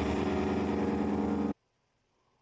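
Engine of a nearby vehicle running steadily, then cut off abruptly about one and a half seconds in, leaving near silence.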